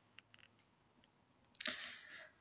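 A quiet small room with a few faint small clicks, then a short breath about one and a half seconds in.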